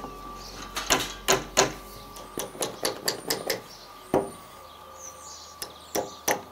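A hammer knocking on timber: about a dozen sharp, irregular taps, a few louder blows among them.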